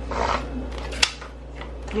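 Paper index card being picked up and handled: a short scraping rustle, then a single sharp tap about a second in.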